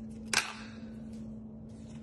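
A single sharp plastic click about a third of a second in: the snap-on lid of a plastic deli container being popped off. A steady low hum runs underneath.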